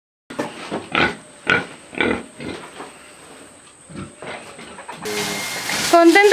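Domestic pigs grunting, about five short grunts spread over four seconds. About five seconds in, the sound cuts suddenly to the steady hiss of a garden hose spraying water.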